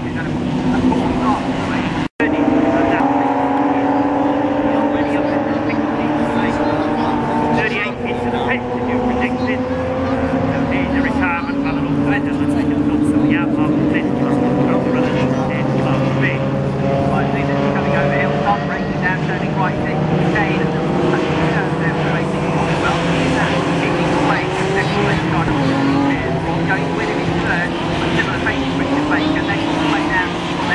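Several BMW E36 3 Series race car engines running through a corner, their overlapping engine notes rising and falling as the cars lift, brake and accelerate past. The sound cuts out for an instant about two seconds in.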